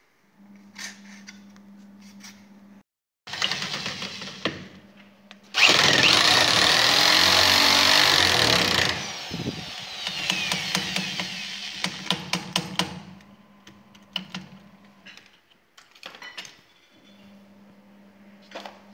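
Handheld power drill driving a screw through a small plastic bracket into a wooden post. It runs in loud spells, the loudest of them several seconds long and varying in pitch. It is followed by lighter runs with a quick series of clicks.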